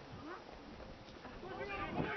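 Voices of rugby players and onlookers shouting across an outdoor pitch, over rough field noise, growing louder near the end.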